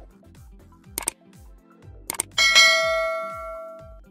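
Background music with a steady low beat. Two sharp click sound effects about a second apart, then a bell-like ding that rings out and fades, the sound of a subscribe-button and notification-bell animation.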